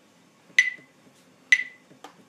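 A metronome set at 64 beats per minute clicking steadily, two sharp clicks about a second apart.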